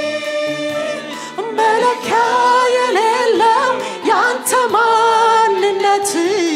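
Live choir singing a worship song, a woman leading on a microphone with the choir singing behind her. The melody moves through held notes with vibrato over sustained tones.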